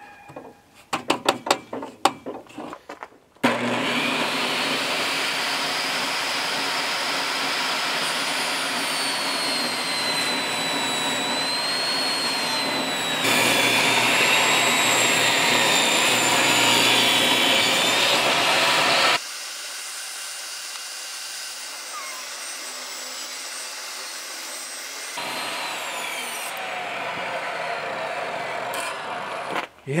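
Table saw ripping rough-sawn boards into narrow strips on a freshly replaced blade: a steady motor-and-cutting noise with a high whine that wavers in pitch, stepping suddenly louder and quieter. It starts after a few seconds of clicks and knocks from the board and fence being handled.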